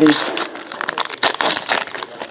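Plastic and foil trading-card pack wrapper crinkling as it is torn open and handled, a rapid, uneven string of crackles and rustles.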